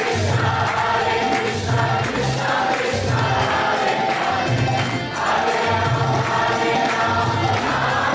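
Kirtan: group chanting of a mantra to harmonium and bass guitar, with hand cymbals (kartals) striking a steady beat.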